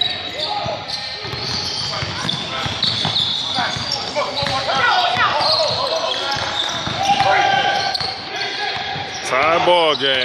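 Indoor basketball game on a hardwood court: the ball bouncing on the floor, short high squeaks, and players' voices calling out, echoing in a large gym. A voice speaks clearly near the end.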